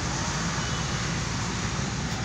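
Steady rushing background noise with a low rumble, even in level throughout.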